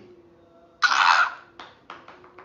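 A man's short, forceful breath through the mouth, a noisy huff about a second in, followed by a few faint mouth clicks.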